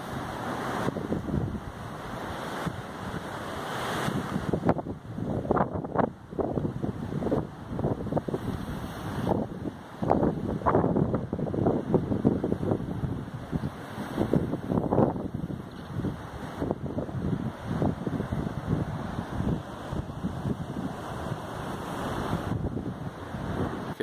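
Wind buffeting the microphone in uneven gusts, over ocean surf washing against a rocky shore.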